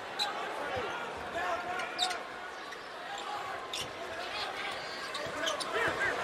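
Basketball being dribbled on a hardwood court, with sneakers squeaking and an arena crowd murmuring and calling out.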